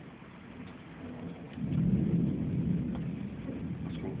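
Rolling thunder: a low rumble that swells about a second and a half in, then fades away slowly.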